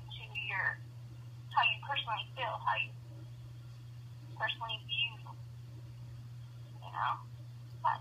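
Brief bits of speech heard over a telephone line, thin and narrow in sound, in short phrases with pauses between them, over a steady low hum.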